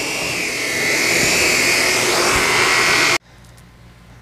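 Shark Apex Powered Lift-Away DuoClean vacuum running, a loud steady whine with rushing air. The sound stops abruptly a little after three seconds in.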